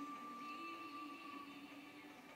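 Music playing from a television's speaker, heard faintly in the room, with long held notes.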